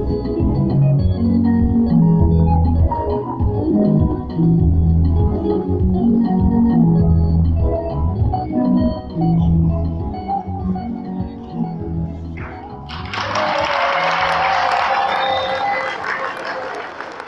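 Organ-sounding keyboard music with a heavy bass line, held chords changing every second or so. About thirteen seconds in the music drops away and a congregation breaks into applause.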